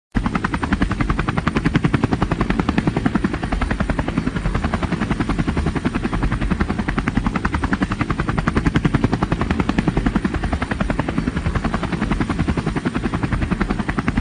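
Rotor blades beating in a loud, rapid, steady chop, a helicopter-like rotor sound.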